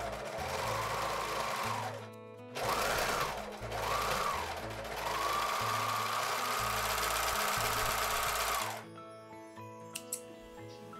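Overlock sewing machine (serger) stitching the edge of knit fabric in several runs: about two seconds of sewing, two short bursts that speed up and slow down, then a steady run of about four seconds that stops near the end. Background music plays underneath.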